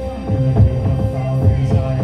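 Instrumental passage of live electronic music through a PA: a throbbing low bass line and a held synth tone over a steady beat of about three pulses a second, with no voice.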